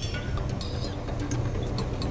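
Steady low rumble of a heavy snowplow truck running, heard from inside the cab.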